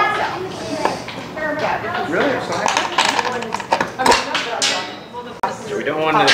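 Indistinct voices talking, with a few sharp clicks and knocks scattered through.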